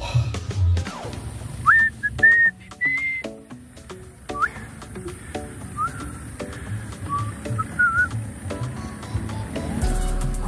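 Music with a whistled tune: short whistled notes, several sliding up at the start, clearest in the first few seconds and sparser afterwards.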